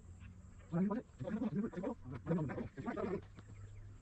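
A man's voice calling out in short bursts with no clear words, over a faint steady low hum.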